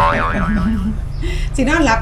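A cartoon-style "boing" sound effect, its pitch wobbling up and down for about a second, over light background music.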